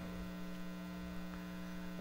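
Steady electrical mains hum in the podium microphone's sound feed, a constant low buzz with nothing else over it.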